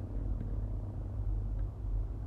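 Steady low rumble with two faint clicks, one about half a second in and one near the end.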